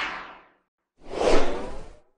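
Two whoosh sound effects on an animated logo sting. The first is fading away in the first half second; the second swells up about a second in and cuts off sharply.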